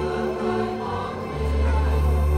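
Choir singing a processional hymn with instrumental accompaniment, a deep bass note coming in about one and a half seconds in.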